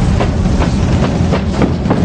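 A train running: a deep, steady rumble with regular clacking of the wheels, about two to three clacks a second.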